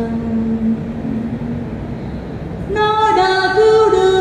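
A solo woman's voice chanting a Vietnamese Catholic Passion meditation (ngắm) in a slow, drawn-out style: a long held note fades away over the first two seconds. A new, louder and higher phrase begins near the three-second mark.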